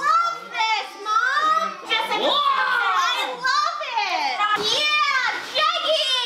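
Excited, high-pitched voices exclaiming and laughing over one another, with cries sweeping up and down in pitch: a delighted reaction to an unwrapped gift.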